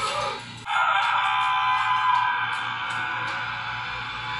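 Music from the drama's soundtrack, a dense layer of held tones that comes in suddenly just under a second in and holds steady.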